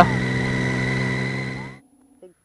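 Motorcycle engine running at a steady cruising speed with wind noise, heard from the rider's helmet. The sound cuts off suddenly near the end, leaving a faint low hum.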